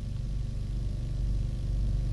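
Steady low buzzing hum of an open phone line, with no speech.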